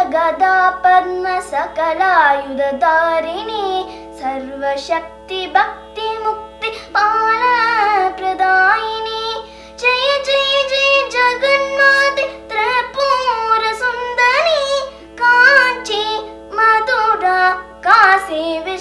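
A young girl singing a Carnatic-style bhajan solo, her voice gliding and ornamented from note to note, with short breath pauses. Under it runs a steady unchanging drone from an electronic shruti box.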